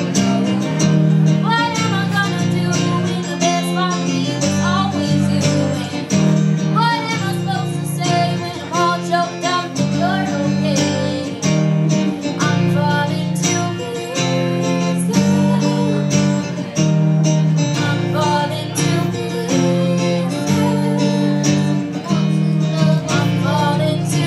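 Acoustic guitar strummed steadily in chords while a girl sings a slow pop song into a microphone, played live through a small PA.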